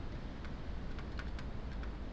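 Faint, scattered light ticks and taps from the pen or mouse input as a label is written by hand on screen, over a low steady hum.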